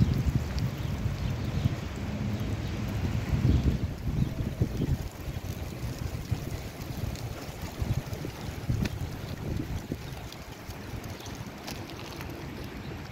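Wind buffeting a phone microphone outdoors: an uneven low rumble, strongest in the first few seconds and easing about halfway through.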